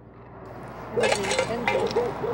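A noisy sampled recording comes in as the beat stops: background hiss rises, then about a second in a voice calls out briefly, with a few sharp clicks over it.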